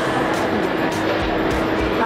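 Background music over a steady mechanical hum with a constant low tone.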